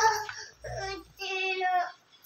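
A young child singing two short held notes, one after the other with a brief break between.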